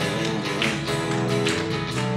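Live gospel band music in an instrumental break between sung verses: an electric guitar and a strummed acoustic guitar playing together in a steady rhythm.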